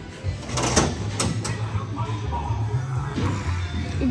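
A punch landing on a coin-op boxing machine's hanging punch bag: one sharp hit just under a second in, then two lighter knocks about half a second later. Background music with a steady bass beat runs throughout.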